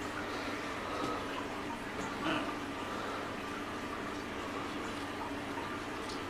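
Steady hiss of water circulating in a fish-spa tank, the even running sound of its pump or filter.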